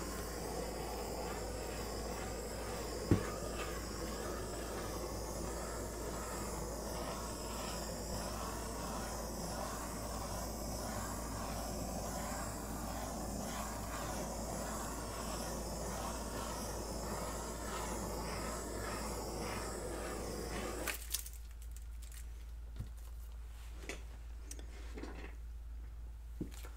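Small handheld torch burning with a steady hiss as its flame is played over wet acrylic paint; the hiss cuts off suddenly about 21 seconds in, leaving faint handling clicks.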